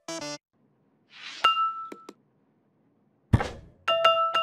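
The last few staccato notes of a commercial jingle stop just after the start. After a pause comes a short hiss ending in a single bright glass-like clink, about a second and a half in. Another pause follows, then a deep thump, and near the end bright plinking bell-like music notes begin.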